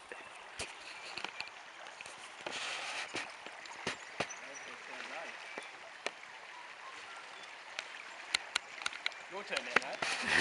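Shallow creek water running steadily, with scattered sharp clicks and taps over it.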